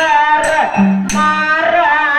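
A singer performing a Kannada Dollina pada folk devotional song, holding long wavering and gliding notes, with a couple of sharp percussion strikes.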